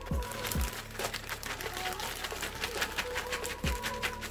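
A clear plastic zip-lock bag crinkling as it is handled and worked open, in a dense run of quick crackles, over background music.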